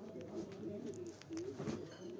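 Pigeon cooing: a low warbling call that runs throughout, with a few light clicks about a second in and again near the end.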